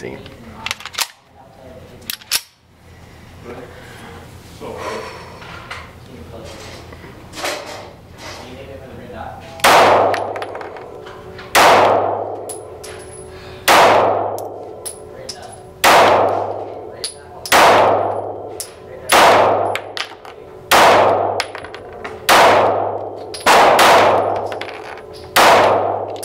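Smith & Wesson CSX 9mm micro-compact pistol fired about ten times in an indoor range booth, each shot ringing with echo. The shots come a second or two apart at first and faster near the end. The first nine seconds hold only a few quiet clicks and handling sounds before the firing starts.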